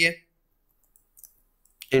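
A few faint computer keyboard keystrokes, spread over about a second, as a word is typed.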